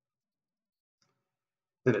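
Near silence with a single faint computer mouse click about halfway through, as the Bevel button is pressed.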